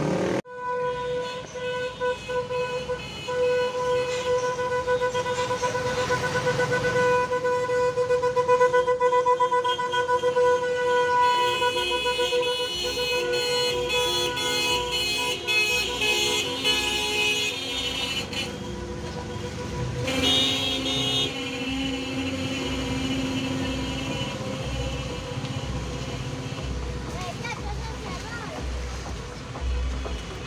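Vehicle horns sounding as a slow convoy of cars and a small truck passes: one horn held steadily for most of the first eighteen seconds, other horn notes overlapping it partway through, and a lower horn note held for a few seconds after about twenty seconds.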